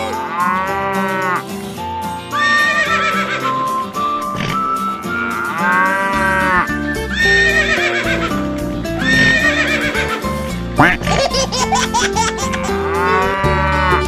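A cow mooing three times, long calls near the start, about midway and near the end, over upbeat background music with a steady beat.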